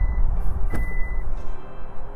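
SsangYong Korando's powered tailgate being triggered to open: a high warning beep sounding in short pulses, with a sharp click about three quarters of a second in. Heavy wind rumble on the microphone throughout.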